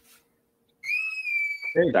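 A single high, steady whistle-like tone lasting about a second, rising slightly at its start and then holding level. A man's voice begins right after it.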